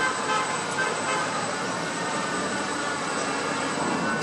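Steady machinery din from a Panama Canal electric towing locomotive (mule) moving slowly along its track on the lock wall while towing a ship.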